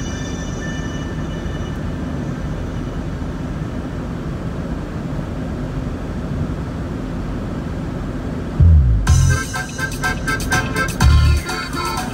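Steady low road rumble from inside a moving car. About eight and a half seconds in, music with heavy bass thumps comes in over it and becomes the loudest sound.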